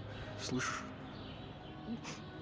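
A crow caws once about half a second in, the call falling in pitch, over faint birdsong. A second, shorter sound comes near the end.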